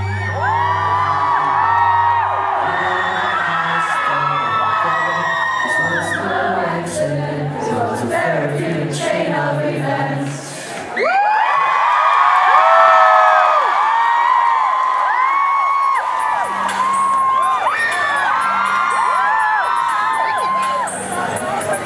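Live rock band playing with a crowd singing along; about eleven seconds in the instruments drop out and the audience's singing, whooping and cheering carries on over a few soft low notes.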